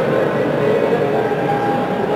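Steady, loud background noise of a large event hall, with faint music in it.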